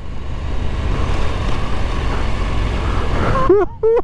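Husqvarna Norden 901 parallel-twin motorcycle riding on a gravel road: a steady rush of wind, tyre and engine noise, heaviest in the bass. The rider gives a short laugh near the end.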